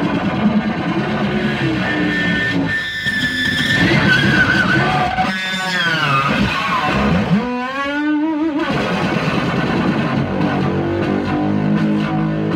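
Stratocaster-style electric guitar played solo: a run of quick picked notes, a long held high note, then two passages in the middle where the pitch swoops down and back up before the picking resumes.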